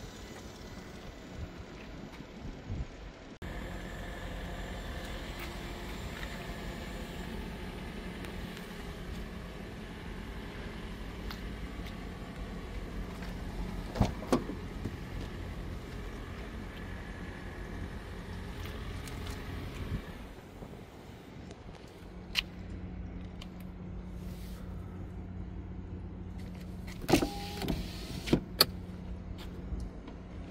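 Steady hum from a parked 2014 Hyundai Sonata Hybrid, which breaks off about two-thirds of the way through and then resumes. A few sharp clicks and knocks come from its doors and fittings being handled.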